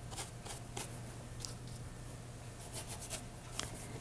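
Wide flat paintbrush stroking acrylic paint across the painting's surface: a few short, soft scratchy brush strokes, faint, over a low steady hum.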